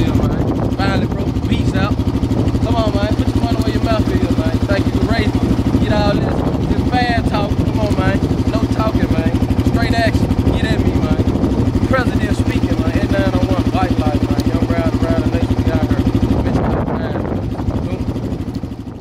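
Dirt bike engine idling steadily, with voices talking over it; the sound fades down near the end.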